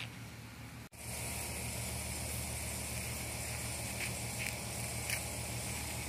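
A steady low hum with a high hiss over it, after the sound cuts out sharply just before a second in. A few short faint high chirps come over it in the second half.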